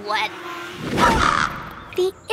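Cartoon soundtrack: a brief vocal sound at the start, then a loud, sudden noisy sound effect about a second in that fades within half a second.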